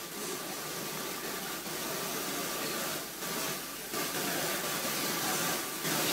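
Steady hiss of room noise in a large hall, with a faint constant tone underneath.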